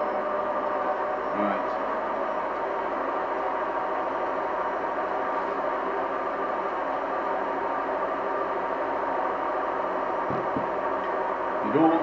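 A steady hum with several held tones at an even level, with a faint low knock near the end.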